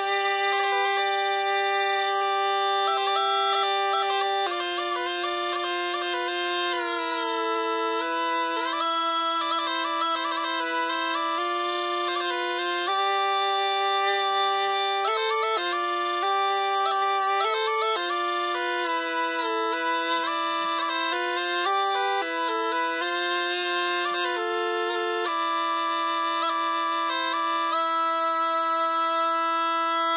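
Two-pipe reed aulos in A, both cane pipes sounded together: the lower pipe holds long notes while the higher pipe plays a moving tune above it, in a continuous reedy tone.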